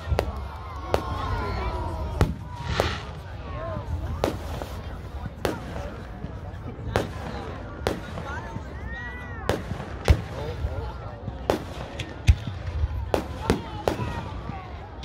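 Aerial firework shells bursting overhead in a display: a dozen or so sharp bangs at irregular intervals, about a second apart, over a steady low rumble.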